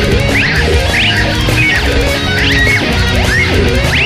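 Heavy metal band playing: electric guitars over bass and drums, with high notes repeatedly sliding upward in pitch, about twice a second.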